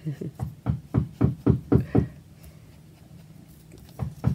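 Banging, like hammering: a quick run of about a dozen sharp knocks, about six a second, that stops after two seconds.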